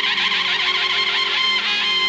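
Instrumental background music: a high melody note held steadily over a low drone, with quick wavering ornaments above it.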